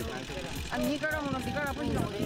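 Speech: an elderly woman talking, with a short pause partway through and a low rumble underneath.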